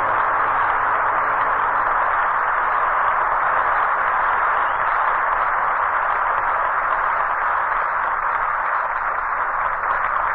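Studio audience applauding steadily after a song, with the orchestra's last low note fading out in the first two seconds.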